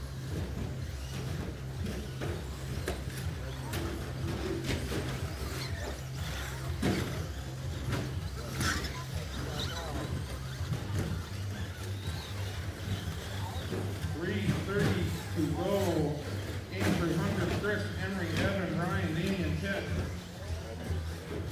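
Indistinct voices over a steady low hum in a large hall, with scattered short clicks and knocks; the voices grow louder from about two-thirds of the way in.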